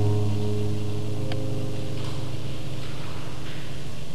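Nylon-string classical guitar: a low chord rings on and slowly dies away, over a steady hiss, with a faint tick about a second in.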